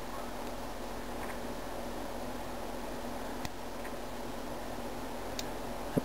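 Steady hiss of room tone and recording noise, with one faint click about three and a half seconds in.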